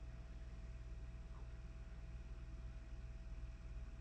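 Quiet room tone: a steady low hum with a thin steady tone above it, and no distinct sound events.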